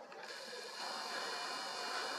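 Camera lens zoom motor whirring steadily as the lens zooms out.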